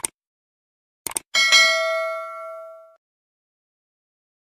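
Sound effects of a subscribe-button animation: a click, then a quick double click about a second in, followed by a notification bell ding that rings out and fades over about a second and a half.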